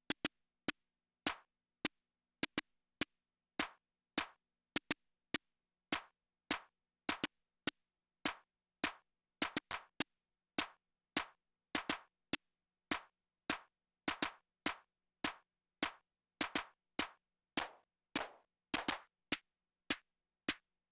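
Unmodified Korg Volca Beats drum machine playing a pattern of its stock snare layered with its clap: short, sharp hits, two or three a second, with almost no bass. The stock snare's decay is short.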